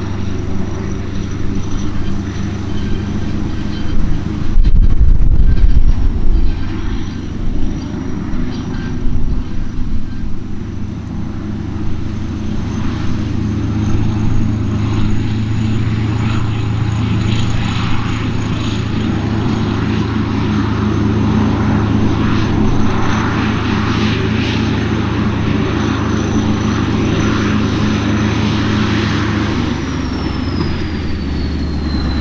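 Kirovets K-700A's 14.9-litre YaMZ-238NB V8 diesel working steadily under load while pulling a disc cultivator, with a thin high whistle over the engine note. About four to six seconds in, a loud low buffeting of wind on the microphone is the loudest sound.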